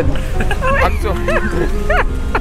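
People laughing and whooping in short calls that rise and fall in pitch, over a steady low rumble of wind on the microphone.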